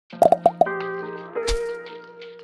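Short opening music sting: four quick, short percussive notes, then a held chord, with a low thump and swish about one and a half seconds in.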